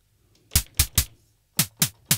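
Synthesized snare drum from a Behringer Pro-1 analog synthesizer, played five times: three quick hits, a short pause, then two more. Each hit is a short burst of noise with a tone that drops quickly in pitch.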